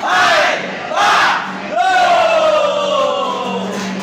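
A group of men shouting a Vietnamese drinking-toast chant in unison: two short shouts about a second apart, then one long drawn-out shout that slowly falls in pitch.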